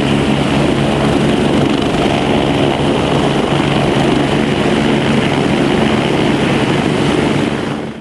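Eurocopter UH-72 Lakota helicopters running with rotors turning: the steady, loud sound of their twin turbine engines and rotor blades. It fades out near the end.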